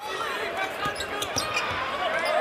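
Game sound from a basketball arena: a basketball being dribbled on the hardwood court, over a steady murmur of many crowd voices.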